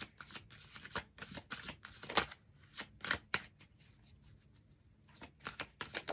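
A tarot deck being shuffled by hand: quick irregular snaps and flicks of cards. They come thick for the first two seconds, thin out to a few scattered flicks, and pick up in a short flurry near the end.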